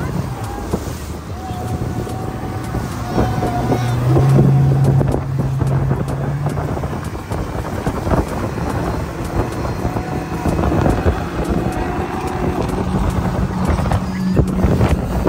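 Yamaha 90 outboard motor running at speed under the load of a towed tube, with wind buffeting the microphone and water rushing in the wake. The engine's hum is loudest from about four to seven seconds in.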